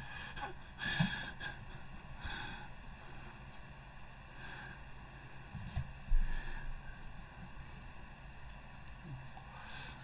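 Quiet room sound from a phone recording, with faint soft breaths from a woman sitting still and a low bump about six seconds in.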